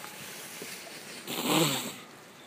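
A short, breathy vocal sound, falling in pitch, like a gasp or a breathy laugh, about a second and a half in.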